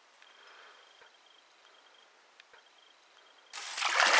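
Water splashing suddenly near the end as a pike thrashes in a landing net at the surface. Before it there is only a faint, high, rapid ticking.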